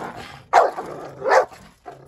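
A pit bull-type dog barking twice: two sharp, loud barks, one about half a second in and one a little after the middle.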